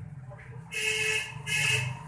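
Two short, loud honks of a vehicle horn, about a second in and again half a second later.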